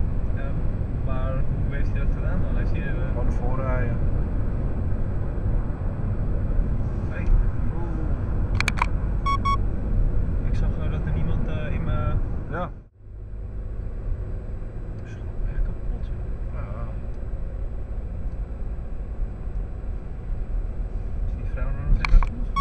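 Steady low road and engine rumble inside a moving car's cabin, with a brief drop-out about thirteen seconds in.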